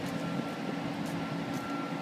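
Steady low mechanical drone of city street background, from engines or machinery, with a faint thin high whine that sets in just after the start.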